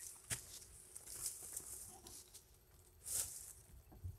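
Faint footsteps through dry leaves and brittle brush, with a sharp click just after the start and a louder rustle about three seconds in.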